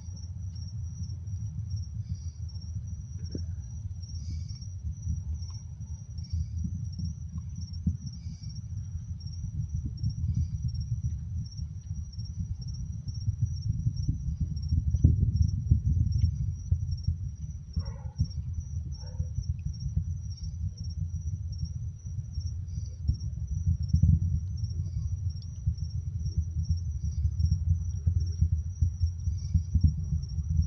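Low, fluctuating rumble of the distant Space Launch System rocket climbing away, swelling about halfway through and again later, under a steady high trill of crickets.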